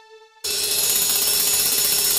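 Electronic music: a soft held note with overtones, then about half a second in a sudden loud, dense wash of noise with one steady tone underneath.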